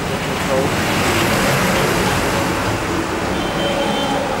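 A road vehicle passing close by: a rush of traffic noise that swells over the first second, holds, and eases off near the end.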